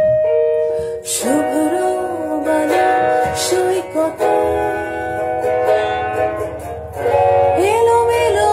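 A song: a woman singing a melody over guitar accompaniment, the sung line starting about a second in after a held note.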